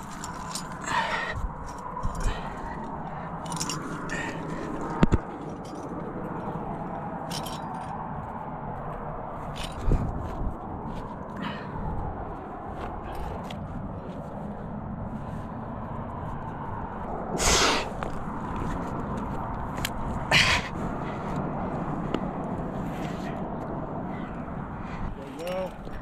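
A climber moving on granite, heard close to the body: scuffs and scrapes of hands and shoes on the rock and light clinks of climbing gear over a steady rushing background. Two louder rushes of noise come about two-thirds of the way through.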